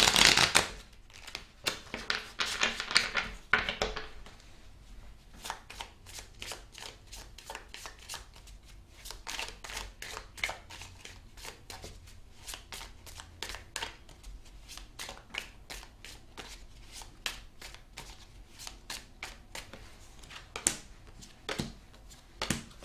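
A deck of tarot cards being riffle-shuffled and bridged, in two dense bursts in the first few seconds, followed by a long run of sharp card clicks and snaps, a few a second, as the cards go on being shuffled and handled.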